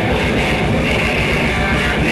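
Live heavy rock band playing loud: electric guitar over a drum kit beating fast.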